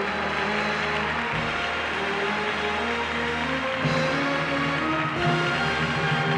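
Orchestra playing walk-on music: sustained chords that shift every second or two.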